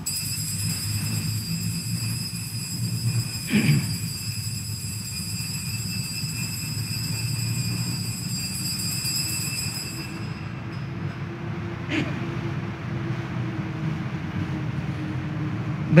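Altar bells ringing on and on at the elevation of the consecrated host, a steady high shimmer of several tones that stops about ten seconds in, over the low hum of the church. A short, louder falling sound comes a few seconds in, and a single click near the end.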